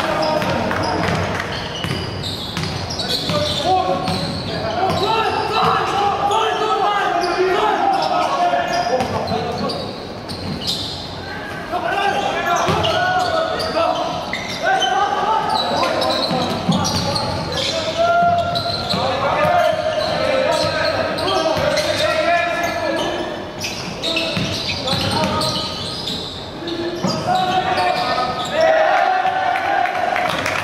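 A basketball bouncing on a hardwood court during live play in a large, echoing sports hall, with voices heard throughout.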